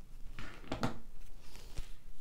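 Hands handling freshly cut strands of pearl cotton floss and laying them across a wooden tabletop: light rustling with a few soft taps and clicks.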